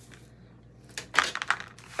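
Plastic Halloween spider web clattering in a quick run of clicks and taps as it is set down on cardboard, starting about a second in.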